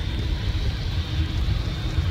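Boeing twin-engine widebody airliner landing on a wet runway, heard from a distance as a steady low rumble with a hiss above it.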